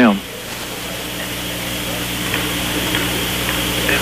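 Gymnasium background noise during a lull in play: a steady hiss-like room and crowd haze, growing slightly louder, over a low steady hum.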